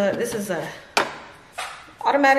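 Plastic reservoir of a gravity dog waterer being handled against its stainless steel bowl, with two sharp knocks in the second half.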